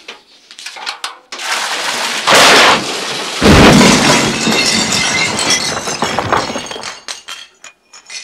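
A bathtub crashing through a collapsing floor and ceiling. A rush of breaking begins about a second in and builds to a loud burst. The heaviest impact, with a deep boom, comes about three and a half seconds in. Falling plaster, debris and water then clatter for a few seconds and die away near the end.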